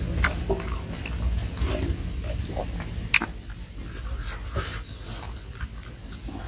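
Close-up chewing and mouth smacking of someone eating rice and smoked pork, with a few sharp wet clicks, the loudest about three seconds in.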